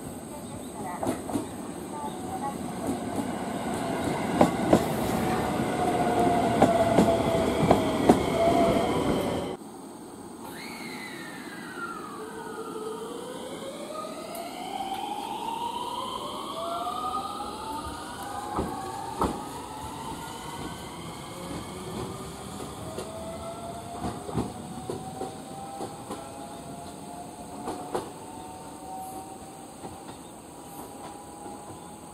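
Electric multiple-unit train running in, wheels clattering over rail joints and points with a steady motor whine that dips slightly as it slows. After an abrupt cut, the train pulls away: its inverter-driven motors give several whining tones that climb in pitch, one after another, as it accelerates, with occasional wheel clicks.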